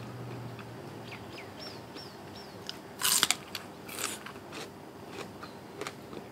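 Close-up crunchy bite into raw small bitter gourd, followed by chewing: a loud crunch about three seconds in, another about a second later, and small wet clicks of chewing around them.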